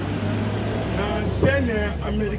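A man's voice speaking into a microphone, clearest in the second half, over a steady low hum.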